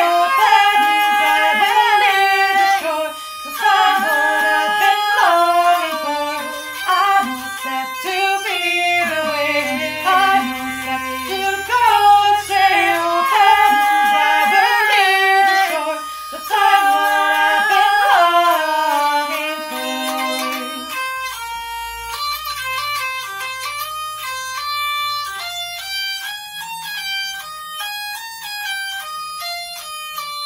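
Hurdy-gurdy playing the song's melody over its low drone, with a wordless sung line following it for roughly the first twenty seconds. After that the hurdy-gurdy carries on alone in a run of quick, short notes.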